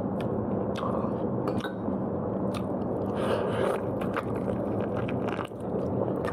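A person chewing and biting food close to the microphone: a steady moist chewing sound broken by many small, irregular clicks.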